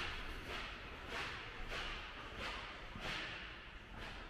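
Footsteps of a person walking at an even pace on a hard polished floor: about six steps, roughly 0.6 s apart.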